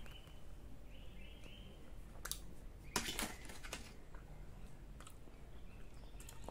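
Faint chewing of a bite of smoked shark meat, with a few soft mouth clicks about two and three seconds in.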